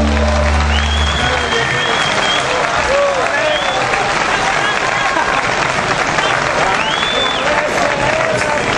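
A rock band's last held chord, with bass and drums, stops about a second in, and an outdoor crowd applauds and cheers, with shouts and whistles.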